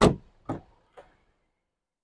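Rear door of a Jeep Wrangler Unlimited being pulled open: a sharp latch click as the handle releases, then two fainter knocks about half a second apart.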